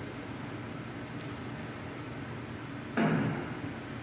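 Quiet, steady room hiss, then about three seconds in a man clears his throat once, briefly.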